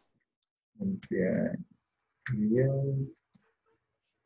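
Mostly a man's voice, two short mumbled phrases, with a few faint computer-keyboard key clicks between them as code is typed.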